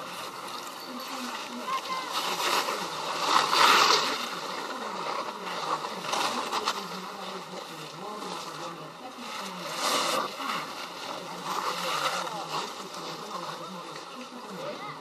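Edges sliding and scraping over packed snow in several surges, the loudest about four seconds in, with faint voices in the background.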